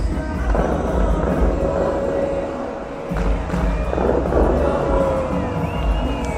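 The Dubai Fountain's show music playing loudly over speakers, with strong bass. Two rushing bursts of water come about half a second in and about four seconds in, as the fountain jets shoot up.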